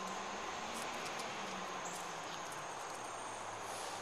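Distant garbage truck engine running steadily as a faint low hum, under a steady high drone of insects.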